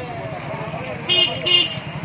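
A vehicle horn gives two short toots about a second in, the second just after the first, over people talking at the roadside.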